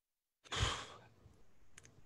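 A single breath or sigh into a close microphone about half a second in, with a low pop as it hits the mic, then faint room noise and two small clicks near the end.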